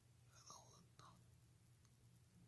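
Near silence with a faint whisper from a person: a short breathy sound about half a second in and a brief one at one second, over a low steady hum.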